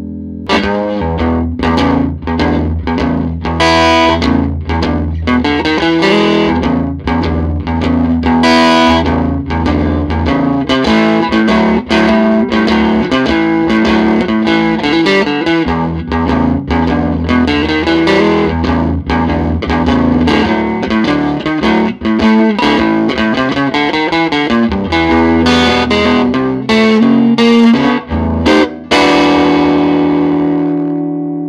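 Fender Stratocaster played through a Grammatico Kingsville 45-watt tube amp with light overdrive: a steady run of blues licks, quick single-note lead lines over low notes ringing underneath.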